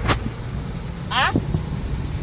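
Steady low rumble of a car in motion, heard inside the cabin, with a sharp click right at the start.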